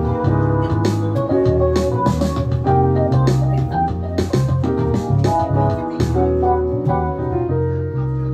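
Live band playing an instrumental passage: electric keyboards with an organ and electric-piano sound over electric bass guitar, with sharp beat hits about twice a second.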